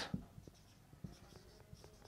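Marker pen writing on a whiteboard: faint scratchy strokes with a few light taps of the tip.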